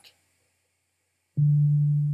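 Sonic Pi 2's default beep synth playing a single low note at MIDI pitch 50 (D3, about 147 Hz), a steady tone that starts abruptly about a second and a half in after near silence and begins to fade.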